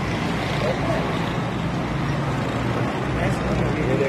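Steady low background rumble with a hum, with faint voices talking in the background.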